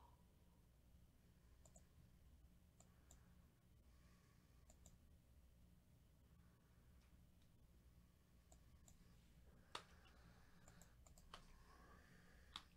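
Near silence: room tone with a faint steady low hum and scattered faint clicks, with a few sharper clicks near the end.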